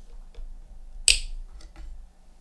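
Thread snapping taut as a hand stitch is pulled tight through leather, one sharp snap about a second in, with a few faint ticks of needle and thread around it.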